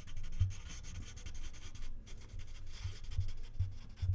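Pencil scratching across paper in quick, rapid strokes, writing out a line of cursive script, with a short break about halfway through.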